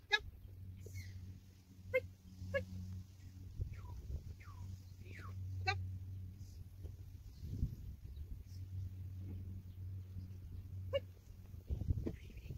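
Young black Labrador giving about five short, sharp yips spaced a few seconds apart, over a steady low hum.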